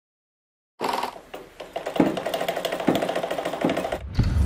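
Logo-intro sound effect: a rapid run of mechanical ticking that starts just under a second in, with heavier hits about two, three and three and a half seconds in.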